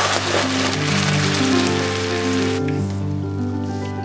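Coconut milk poured into a hot oiled pan of frying lemongrass, hissing and sizzling loudly as it hits the oil, dying down about two and a half seconds in. Background music plays throughout.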